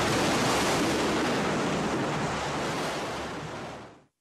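A loud, steady rushing noise with a low hum underneath, fading out near the end.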